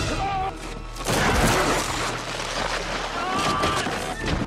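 Film soundtrack action mix: a fast burst of gunfire over dramatic score music, with a man shouting. The firing is densest from about a second in onward.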